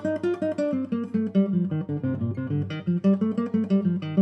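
Nylon-string classical guitar played without nails: a quick run of single-note scale tones plucked with the flesh of the fingertips from underneath the strings.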